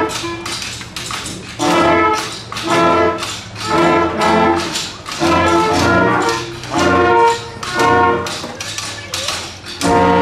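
A school concert band's brass and woodwinds playing short, accented chords about once a second, moving into a held chord at the very end.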